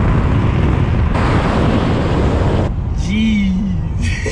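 Tesla Model 3 Performance driving past, a loud, steady rush of tyre and wind noise with no engine note that stops abruptly a little under three seconds in. A voice follows briefly.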